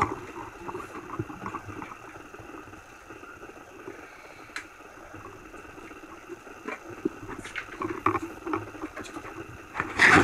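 Boat engine running steadily, with scattered clinks and knocks of scuba gear being handled on the deck, more frequent in the last few seconds.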